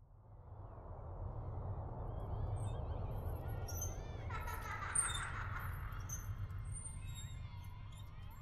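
Low ambient background sound fading in from silence: a steady low rumble with faint high chirps and squeaks over it, and a brief louder sound about five seconds in.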